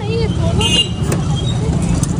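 Street traffic running steadily, with a vehicle horn giving a short toot under a second in.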